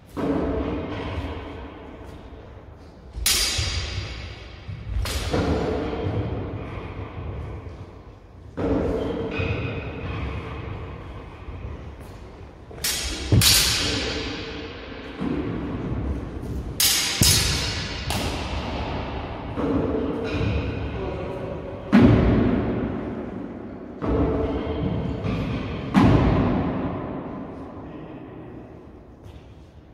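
Steel training swords clashing in sparring: irregular sharp strikes a second or a few apart, each ringing out and echoing round a large hall, with a quick run of three strikes about halfway through.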